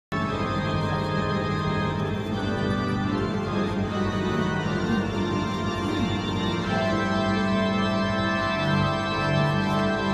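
Organ music: sustained chords held steadily, moving to a new chord about seven seconds in.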